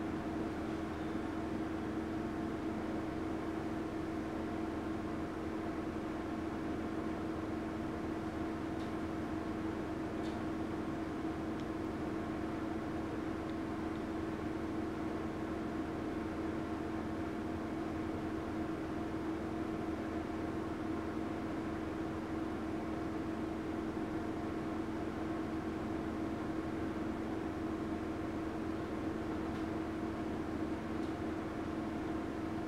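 Steady machine hum with a constant low tone over a faint even hiss, unchanging throughout.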